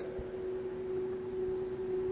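Room tone of the recording: a steady hum over a faint even hiss, with no other event.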